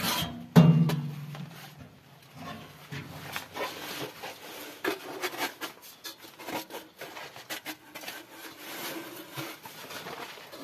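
Metal tent stove and stovepipe sections being handled and fitted together: a loud ringing metal clank about half a second in, then scraping, rubbing and light knocks of metal on metal.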